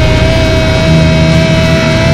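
Loud, dense noise music: a wash of distorted guitar noise with one high whining tone held steady, over low droning notes that shift about halfway through.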